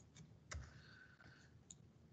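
Near silence broken by a faint computer mouse click about half a second in and a fainter click near the end.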